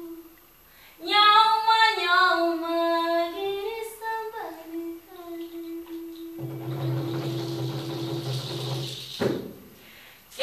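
A woman singing an unaccompanied melody, holding notes and sliding between pitches after a brief pause near the start. About six seconds in, a lower, breathy held tone sounds beneath her sustained note, stopping shortly before the end.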